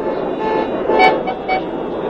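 Street traffic noise with several short car horn toots in the middle, the strongest about a second in.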